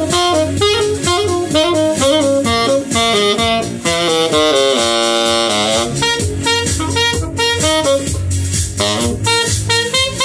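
Saxophone playing a quick jazz line that moves rapidly from note to note, with one long held note about halfway through.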